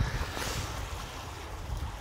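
Wind buffeting the microphone as a fluctuating low rumble, over the faint wash of calm sea water lapping against shoreline rocks.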